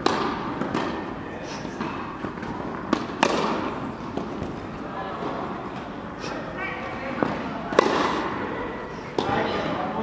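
Tennis balls struck by a racket and bouncing on an indoor court: several sharp pops a few seconds apart, each echoing in the hall.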